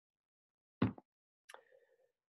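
A paperback book set down: one short, dull thump a little under a second in, then a faint click about half a second later.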